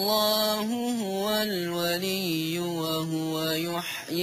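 Quran recitation in Arabic by a young man, chanted melodically in one long breath of held, ornamented notes that step down in pitch, breaking off just before the end.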